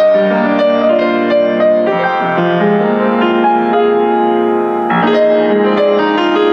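Steinmayer upright acoustic piano being played: a slow passage of sustained, overlapping chords, with a fresh chord struck about five seconds in. Its tone is, if anything, slightly bright.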